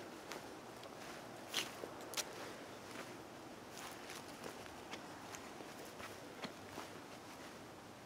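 Footsteps on grass, a few soft crunches and clicks at irregular intervals over a faint steady hiss.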